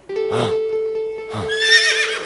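A horse whinnying in the last half second, a wavering high-pitched cry, over background music holding one steady note. Two short 'ah' sounds come before it.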